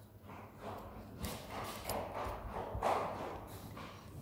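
Close handling noise of a microphone being fitted onto its stand: irregular knocks, clicks and rubbing right at the microphone.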